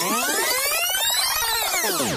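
Electronic sweep sound effect: many pitched tones glide up together and then back down, at a steady level.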